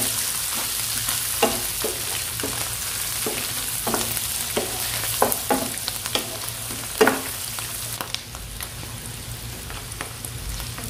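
Sliced mushrooms and garlic sizzling in a nonstick frying pan, stirred with a wooden spoon that scrapes and knocks against the pan about twice a second. The stirring stops about eight seconds in and the frying hiss goes on, a little quieter.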